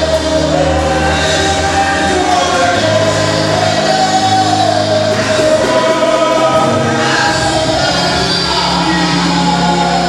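A group singing a gospel praise song, with a melody line over long held low notes, steady throughout.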